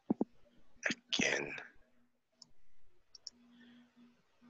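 Two sharp clicks, then a person sneezing once, a short catch followed by a louder burst of breath about a second in.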